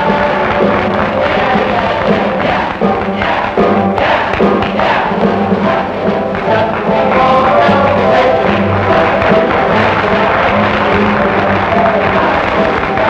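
An all-male college revue troupe singing a stage number together over musical accompaniment.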